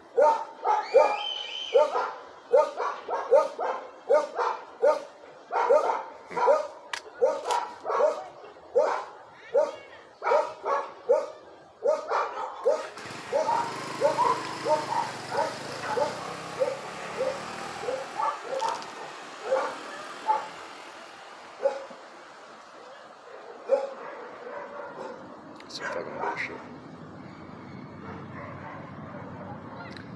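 A dog barking over and over, about two barks a second for the first twelve seconds or so, then more sparsely, with the last barks a few seconds before the end. A steady rush of noise joins about halfway.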